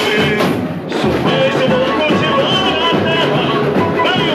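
Live samba-enredo played loud over a PA: a lead singer over a samba percussion section (bateria) keeping a steady beat. The music dips briefly just before one second in.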